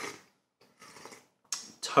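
Tea being sipped from small tasting cups: three short, soft, noisy sips or slurps, with a voice starting right at the end.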